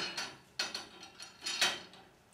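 Aluminium end bracket of a chainsaw mill being handled and fitted onto the mill's rails: two short metal scrapes and clicks, about half a second in and again about a second and a half in.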